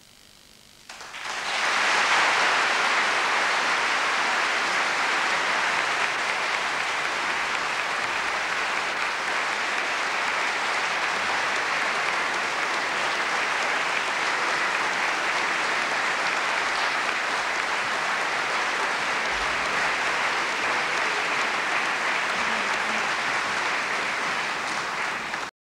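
Concert hall audience applauding: after a brief hush, the applause breaks out suddenly about a second in, swells within a second and then holds steady and loud.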